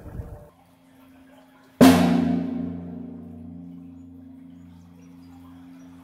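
A single sharp bang inside a concrete box culvert, about two seconds in. A long reverberant decay follows, with a low steady ringing that dies away slowly over several seconds: the culvert's own reverb tail.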